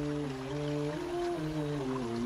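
Background track of soft, wordless vocal humming in slow, held chords that shift in steps, with a bed of rain sound beneath.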